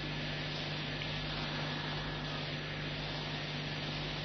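Steady hiss with a constant low hum: the recording's background noise, with no other sound.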